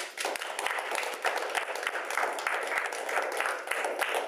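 A small group of people applauding, hand claps starting suddenly and going on at a steady pace.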